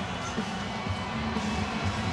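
Hockey arena crowd noise, with music playing over the arena's public-address system during the stoppage in play.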